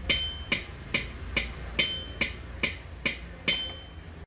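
Built-in metronome of a Yamaha PSR-E360 keyboard clicking steadily, about two and a half beats a second, through the keyboard's speakers. Every fourth click is a brighter accented tone marking the first beat of each bar of four.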